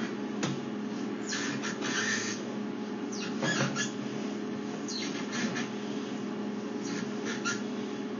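A sewer inspection camera's push cable being pulled back through the drain pipe, giving off irregular squeaks and scrapes every second or two over a steady electrical hum from the equipment.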